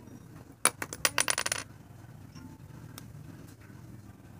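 A lipstick tube and its cap handled, making a quick clatter of small hard clicks and rattles about a second in, lasting under a second.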